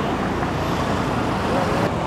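Steady road traffic noise from a busy city street, cars passing close by.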